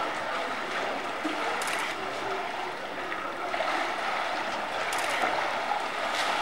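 Canal water lapping and sloshing steadily close to the microphone, with a few faint splashes.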